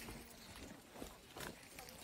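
Faint footsteps on dry leaf litter: a few soft steps about a second in and again a moment later, with faint voices.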